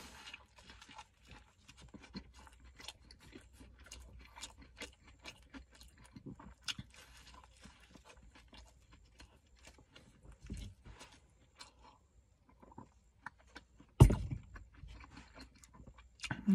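Close-up chewing and wet mouth sounds of a man eating a Big Mac fast: soft, irregular clicks and squelches of bun, patties and sauce. About fourteen seconds in there is one loud thump.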